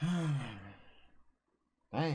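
A man sighing aloud twice: a long voiced sigh sliding down in pitch and trailing off into breath, then a shorter falling sigh near the end.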